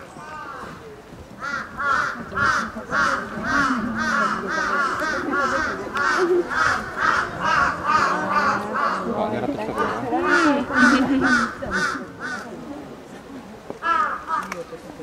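A crow cawing in a long, even run of harsh caws, about two a second, breaking off near the end and then one more caw.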